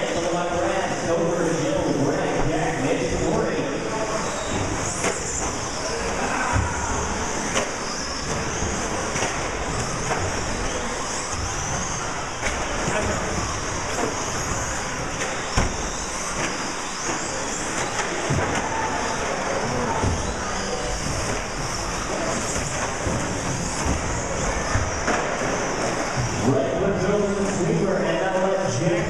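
Electric 1/10-scale short-course RC trucks racing on an indoor track: a steady mix of high motor whine and tyre noise, with a few short knocks as trucks hit the track boards or land off jumps.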